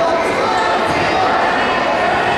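Indistinct voices of spectators and coaches overlapping and echoing in a school gymnasium during a wrestling bout, a steady hubbub with no single clear call.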